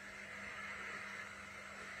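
Faint room tone: a steady low hiss with a faint hum.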